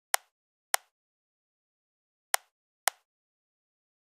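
Four sharp computer mouse clicks in two pairs, about half a second apart within each pair, with dead silence between. Each pair is the two corners of a selection box being picked.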